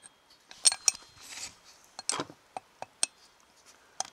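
A new steel exhaust valve being worked by hand into its guide in a Royal Enfield 500 UCE cylinder head: irregular light metallic clicks and clinks as the valve knocks against the head, with a brief scrape about a second and a half in.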